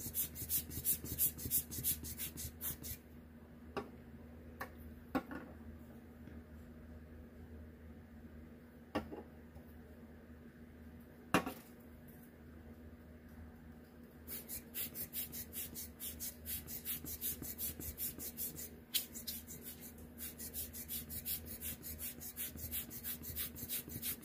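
Rapid, rhythmic puffs of air from a hand-squeezed rubber bulb air blower (Tim Holtz blowing tool) being pumped to push wet alcohol ink across the paper. The puffs come in two runs: for the first few seconds, then again from a little past halfway to the end. In between there are a few single clicks over a steady low hum.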